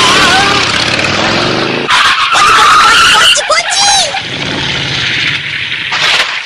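Cartoon sound effects of a sidecar scooter speeding: the engine running hard, with a loud tyre screech about two seconds in that lasts just over a second, as it skids round a bend.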